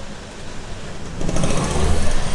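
A motor vehicle's engine close by in the street, growing louder in the second half with a low rumble.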